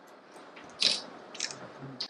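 A few short crinkling rustles from objects being handled, with the loudest about a second in and a smaller one shortly after, over quiet room tone.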